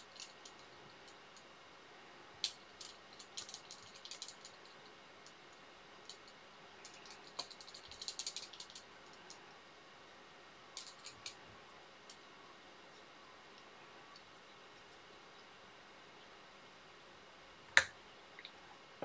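Faint, scattered light clicks and ticks of small metal fly-tying tools, such as hackle pliers and a bobbin holder, being handled at the vise. There is a small cluster of them near the middle and one sharper click just before the end.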